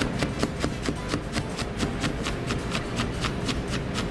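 Knife cutting a Granny Smith apple into julienne on a cutting board: quick, even knocks, about five a second.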